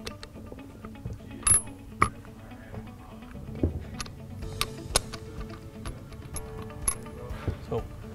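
Scattered sharp metallic clicks and clinks as the vacuum pump and power steering pump housings of a 5.9L Dodge Cummins are handled and turned by hand to mesh the drive gear and line up the drive dogs, with faint background music underneath.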